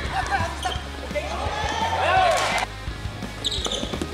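Basketball bouncing on a hardwood gym court during play, with players' shouts and high squeaks, loudest a little past halfway, under a background music track.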